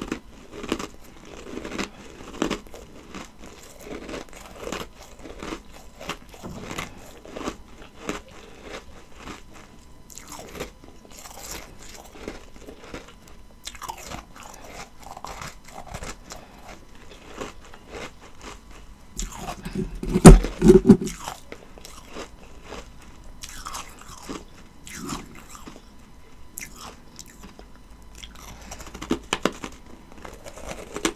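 Close-miked chewing of ice: a steady run of soft, crisp crunches. A louder burst of crunching comes about two-thirds of the way through, and the crunching picks up again near the end.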